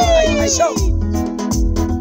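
Ugandan pop song: a singer's long held note slides down in pitch and ends about a second in, over a steady backing beat with heavy bass.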